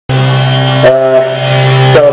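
Live band's amplified drone between songs: a loud held low note with a sustained chord ringing above it, the chord shifting once just under a second in.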